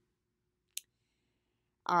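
A single short, sharp click about three quarters of a second in, in an otherwise silent pause; a woman's voice begins a word near the end.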